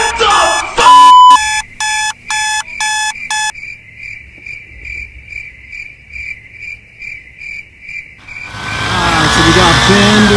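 Alarm clock beeping about twice a second over crickets chirping, the beeping stopping after about three and a half seconds while the crickets go on. Near the end the sound cuts to a loud rush of outdoor wind noise.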